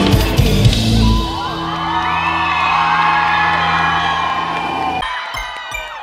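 Live pop band with drums, bass and keyboards hitting the last notes of a song, then a held chord ringing out while the crowd cheers and whoops. It cuts off suddenly about five seconds in, followed by faint tinkling jingle notes.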